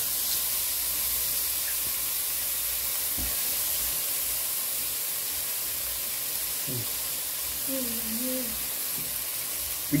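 Chopped garlic, onion, pimento peppers and shado beni frying in a metal pot, a steady, even sizzle.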